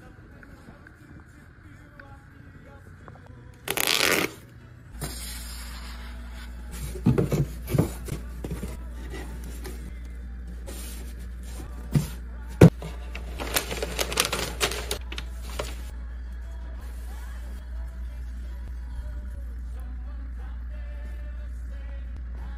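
Soft background music under packing handling sounds: a cardboard box being folded, with a few sharp taps and clicks and bursts of rustling in the middle stretch. There is a short loud rustle about four seconds in.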